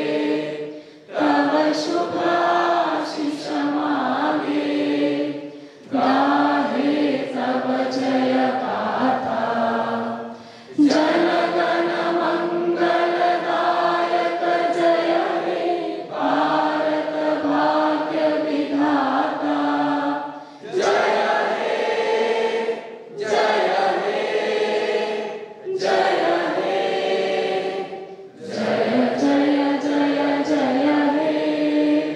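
A large group of students singing together in unison, like a choir, in sung phrases of a few seconds, each followed by a brief pause for breath.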